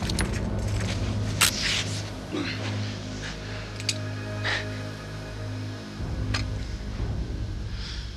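Dramatic underscore music holding a low, steady drone, broken by several sharp clicks and knocks, the loudest about a second and a half in.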